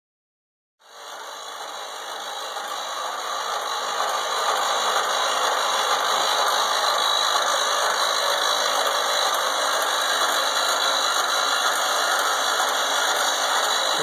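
Code 3 MX7000 light bar's rotating beacons running, their rotator motors making a steady mechanical running noise. It starts about a second in and grows louder over the next few seconds as the rotators come up to speed, then holds level.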